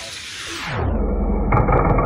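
Die-cast Hot Wheels cars rolling down a plastic track to the finish gate. The rolling hiss slides down in pitch about half a second in, like slowed-down audio, and turns into a deep, louder rumble with a few clicks near the end.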